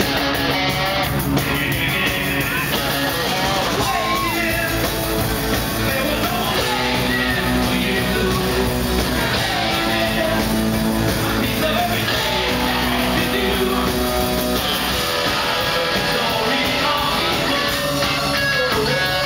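Live rock band playing loudly, with electric guitar and drums, and a singer's voice over the music at times.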